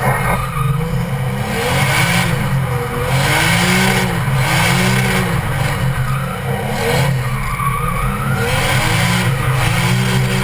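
A drift car's engine revving up and falling back over and over, about once a second, as the driver works the throttle through a slide. Under it is tyre noise from the car sliding on wet asphalt.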